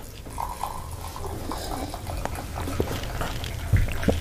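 A man drinking water from a glass close to the microphone: sips and swallows with breaths between them, and a low bump just before the end.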